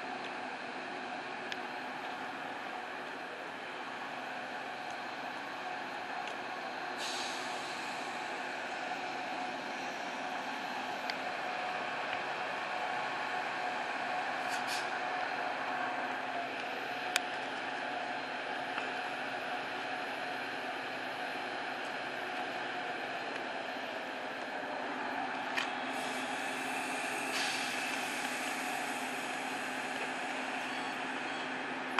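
A Metra bilevel commuter train running at the platform, with a steady drone and hum as it gets ready to leave and pulls out. Air hisses out about seven seconds in and again near the end, and a few sharp clicks sound in between.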